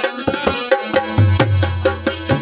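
Dholak, a two-headed barrel drum, played solo by hand: quick, even strokes, about five a second, with a deep ringing bass-head tone that swells again about a second in.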